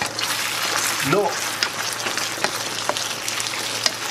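Chicken and asparagus in a cream sauce sizzling and bubbling in a frying pan, stirred with a plastic slotted spatula, with scattered sharp clicks. It is cooking hotter than the low simmer wanted, and the hob is being turned down.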